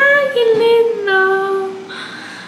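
A woman's voice singing a long, delighted 'aaah' that steps down in pitch and holds a lower note before fading near the end.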